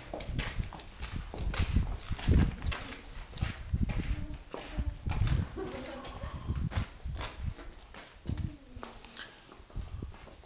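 Irregular low thumps and knocks, at times several a second, loudest about two and a half seconds in, with brief voices around the middle.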